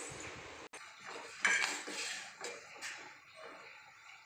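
Metal spoon stirring milk in a stainless steel pot, clinking and scraping against the pot's sides in a run of strokes, loudest about a second and a half in.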